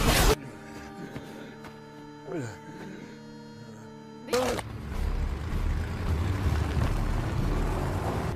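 Film soundtrack: a loud fight noise cuts off just after the start, leaving a quiet sustained music drone with a brief falling glide. About four seconds in comes a sudden loud hit, then the low, steady rumble of trucks driving in.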